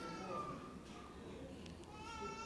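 A faint, drawn-out high-pitched cry with a slightly wavering pitch, which fades out about a second in; another begins near the end.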